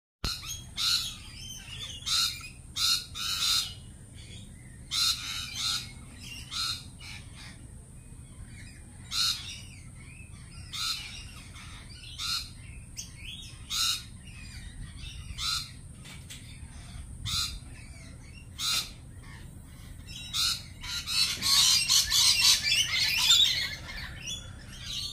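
Lorikeets screeching: short, harsh calls every second or two, building to a dense flurry of overlapping screeches in the last few seconds.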